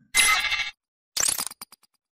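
Sound effects of a logo sting: a short, bright burst, then a second burst that ends in a handful of quick taps coming faster and fading out.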